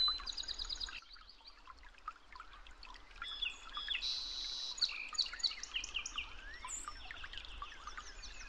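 Many birds chirping and calling together, a dense run of short rising and falling chirps that thickens in the second half.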